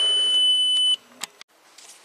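Instrument-cluster warning buzzer of a 2003 VW Passat: one steady high beep about a second long that cuts off abruptly, then a single short click.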